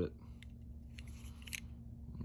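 Reate Exo-M gravity knife being worked in the hand: a few light metallic clicks and a faint sliding rasp from the Elmax blade and titanium handle, the clearest clicks about a second and a second and a half in.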